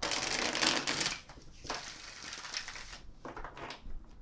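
A deck of tarot cards being riffle-shuffled by hand: a rapid crackling patter of cards falling together. It comes in three runs: about a second at the start, a longer one in the middle and a short one near the end.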